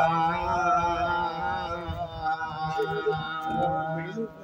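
A man singing a slow, chant-like song in long, drawn-out notes that waver in pitch.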